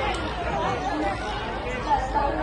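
Spectators chattering, several voices talking at once with no words clearly picked out.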